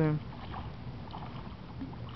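Wind rumbling on the microphone, a steady low noise with a few faint knocks.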